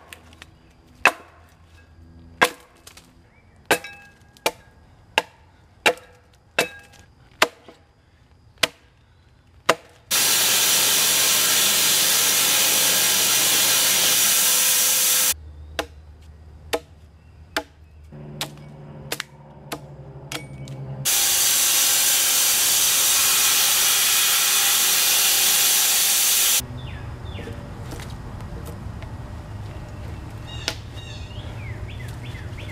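Steel broad axe and adze blades chopping into a split walnut log, a sharp strike a little more than once a second. Twice the chopping gives way to several seconds of loud, even hiss that starts and stops abruptly.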